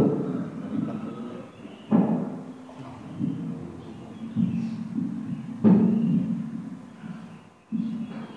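Handheld microphone being handled and passed between people, giving several sudden thumps a second or two apart, each dying away into a low rumble.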